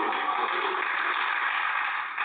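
Steady hiss of static on a call-in phone line, holding at an even level.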